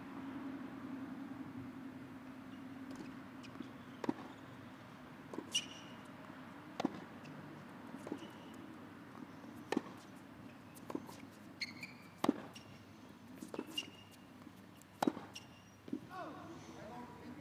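Tennis rally: the ball is struck back and forth and bounces on the hard court, a sharp pop every second or so from about four seconds in. A few short high squeaks come in among the hits.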